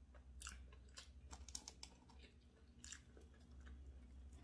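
Faint close-miked chewing of food, with short crisp clicks scattered through, over a steady low hum.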